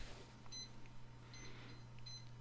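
Quiet background with a steady low hum and a few faint, short, high-pitched beeps.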